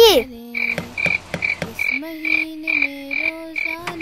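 Night ambience of frogs croaking, with a short high chirp repeating about three times a second and a steady low tone in the second half.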